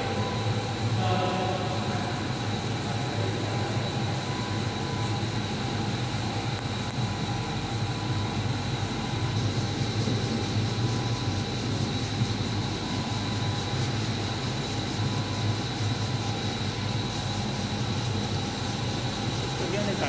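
Steady hum and low rumble of running industrial machinery, with a constant thin high whine over it.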